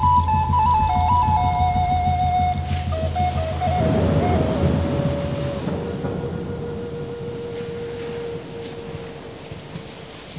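Closing phrase of a Native American flute piece: the melody steps down and settles on one long held note, over a low drone that drops away about halfway through. The music fades out.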